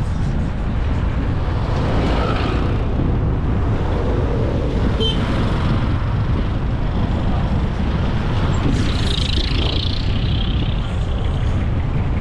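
Road traffic on a busy city road: a steady, loud low rumble of passing vehicles, with a brief hissing swell about nine seconds in.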